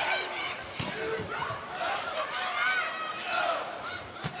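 Arena crowd noise during a volleyball rally, with short squeaks and calls over the crowd and one sharp hit of the ball just under a second in.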